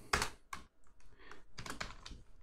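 Typing on a computer keyboard: a scatter of separate keystrokes, with a quicker run of keys in the second half.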